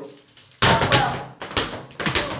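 Flamenco dance shoes stamping on the floor. There are two sharp strikes, about half a second in and again about a second and a half in, each ringing briefly in the room.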